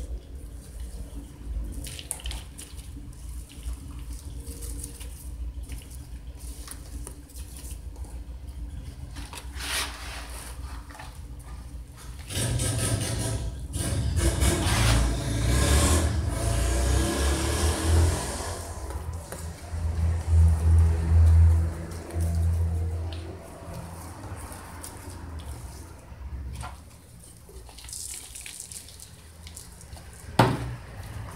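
Hands working potting mix and plastic pots: scattered small clicks and rustles, then a rushing, pouring noise for several seconds as a granular material is poured over the mix. A loud low rumble follows shortly after.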